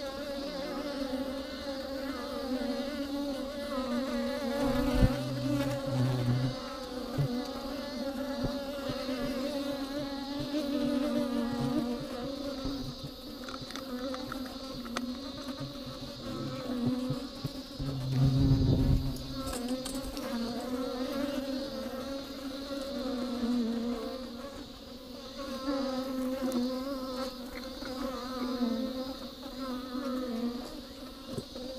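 A cluster of honeybees buzzing steadily inside a hollow tree trunk, a continuous low hum that wavers slightly in pitch. Two low thumps stand out, about five seconds in and again around eighteen seconds.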